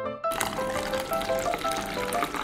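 Background music, joined about a third of a second in by a steady crackly hiss of water being poured into a plastic cup.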